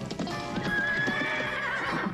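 Cartoon horse sound effects: hoofbeats clip-clopping, then a long, wavering whinny as the horse rears up, over background music.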